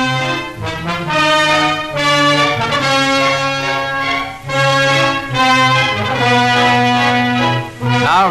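Orchestral newsreel score led by brass, playing long held chords over a sustained low note, the harmony changing every second or so.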